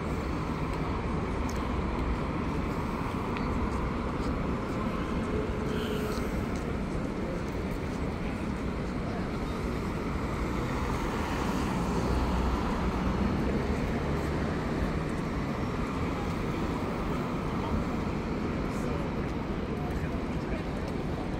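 City street traffic: a steady hum of car engines and tyres, with indistinct voices of passers-by.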